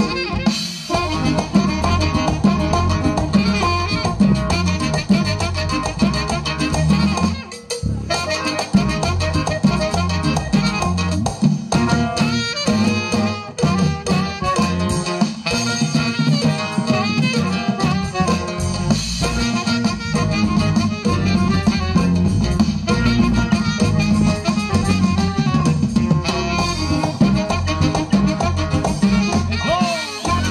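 Live regional Mexican band playing dance music with drums and a steady beat, briefly dropping away about seven and a half seconds in.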